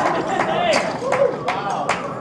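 Audience chatter: several people talking at once close to the microphone, with a few sharp clicks among the voices.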